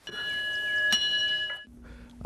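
Small bronze temple bell hanging on a stand, struck twice with a mallet: a clear ringing with several high overtones, the second strike about a second in, and the ringing cut off suddenly near the end.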